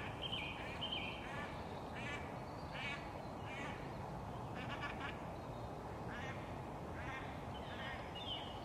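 A bird calling again and again, short calls about once a second, over a steady low background rumble.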